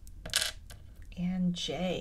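A small wooden letter tile set down on a table: one sharp clack about a third of a second in, with a lighter tick after it. In the second half, a woman makes a short wordless vocal sound.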